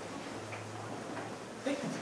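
Quiet room tone in a hall: a faint steady low hum with a few soft, scattered clicks.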